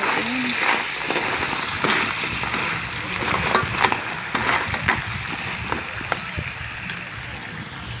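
Crabs frying in a metal wok: a steady sizzle, with irregular knocks and clatters of shells against the pan as they are stirred.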